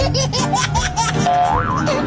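Brief laughter mixed with a cartoon-style comedy sound effect: springy, wobbling pitch glides over a steady low tone, with a rising, wavering tone near the end.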